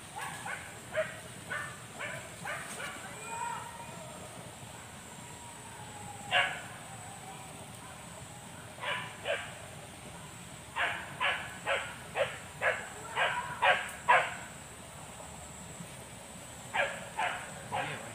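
Hunting dogs barking in the forest during a wild boar hunt: a few short barks near the start, a single one about a third of the way in, then a quick run of about eight barks, and three more near the end.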